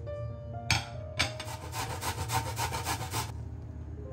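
Turnip grated on a metal box grater: a quick, even run of rasping strokes, about five a second, for about two seconds, after a single knock. Soft background music runs underneath.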